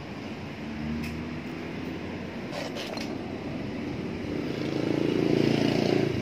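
An engine running steadily in the background, growing louder about four and a half seconds in and loudest near the end, with a few light clicks and knocks from a handled object.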